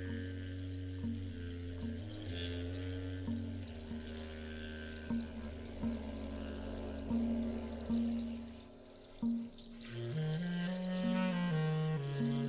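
Live free-improvised jazz on low saxophone, electric bass and percussion. A low sustained drone holds under scattered plucked notes until about nine seconds in. After a brief dip, a deep horn line enters, rising and then falling.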